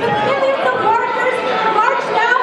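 Many people talking at once in a large hall: overlapping crowd chatter with no single clear speaker.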